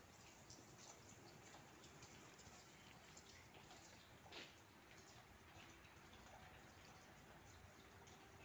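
Near silence: faint rain patter with scattered drips. There is a slightly louder tick about four seconds in.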